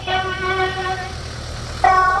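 Slow singing in long held notes that step between pitches, swelling louder near the end, over the steady low rumble of an idling ambulance van engine.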